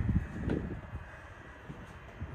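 Low, uneven rumbling background noise with a soft bump about half a second in, then quieter.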